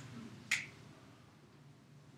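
A single sharp click from a whiteboard marker about half a second in, as writing begins on the whiteboard, over faint room tone.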